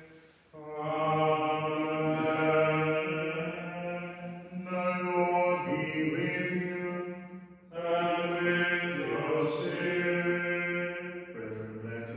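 Men singing Gregorian plainchant in Latin: slow, held notes in two long phrases, each after a brief pause for breath.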